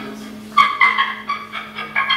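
Live experimental improvised music: a steady low drone with higher, effects-processed tones above it that stop and restart about three times a second.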